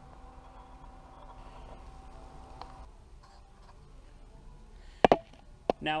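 Quiet workshop room tone with a faint steady hum that stops a little under halfway. About five seconds in there is one sharp click, and a softer click follows shortly after.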